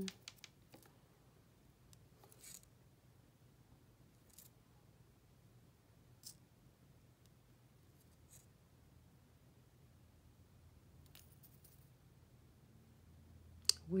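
Faint scattered small clicks and light scratches, a few seconds apart, from a nail-art pick-up tool touching the plastic trays and the nail tip as tiny dragon-scale gems and metal charms are picked up and placed.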